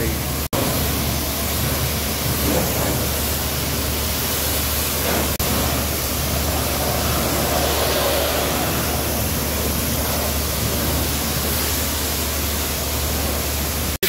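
Pressure-washer wand spraying water onto a car body for the final rinse: a steady hiss of spray with a low hum underneath. It is broken by two brief dropouts, one about half a second in and one around five seconds.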